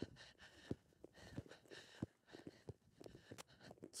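Near silence with faint, irregular thuds of a horse's hooves cantering in a collected canter on arena sand.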